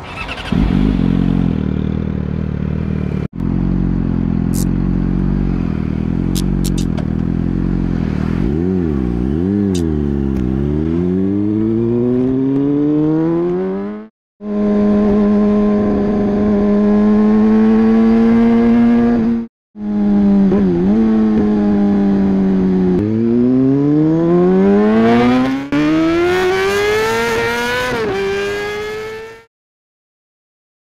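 Honda CBR250R's single-cylinder engine. It idles steadily with a couple of short throttle blips, then climbs in pitch under acceleration and holds a steady cruise. It pulls up again, with a gear change near the end. The segments are edited together with abrupt cuts.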